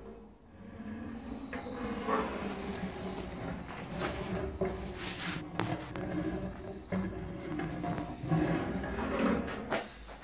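Bearings of a home-made linear carriage rolling along a steel tube rail: a continuous rumbling run with scattered clicks and knocks, loudest shortly before the end.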